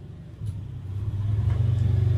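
A low engine rumble with a fine, even pulse, growing louder from about half a second in.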